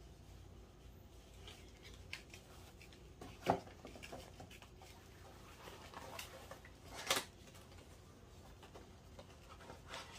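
A small cardboard box being opened and handled, its contents shifted about inside: quiet rustling, with two sharp clicks about three and a half and about seven seconds in.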